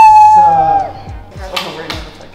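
Excited, drawn-out vocal cries of joy held on a steady pitch. The cries break off under a second in, followed by a brief knock.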